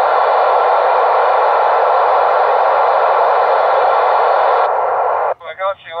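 Loud, steady static hiss from an Icom ID-4100 transceiver receiving the TEVEL-5 satellite's 70 cm downlink with no voice in it yet. It cuts off about five seconds in, and the other station's D-Star digital voice reply comes through.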